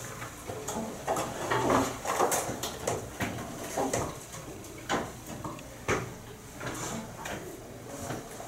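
Chalk drawing straight lines on a chalkboard: a series of short, irregular scraping strokes and taps.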